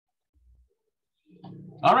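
Near silence for about a second, then a man's low, steady voice sound that runs into the spoken words "all right" near the end.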